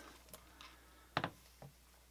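An aluminium MacBook Pro laptop set down on a desk: one sharp knock about a second in, with a couple of faint ticks from handling.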